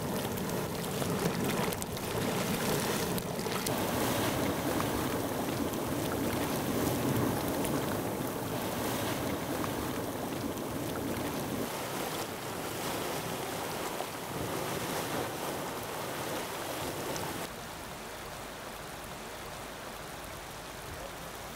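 Steady rushing noise of hot-spring water flowing and bubbling, mixed with wind on the microphone; it drops to a lower, thinner level about 17 seconds in.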